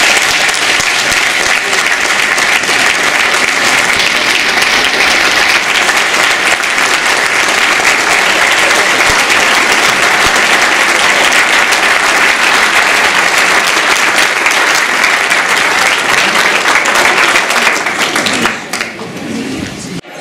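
Audience applauding: dense, steady clapping that dies down near the end.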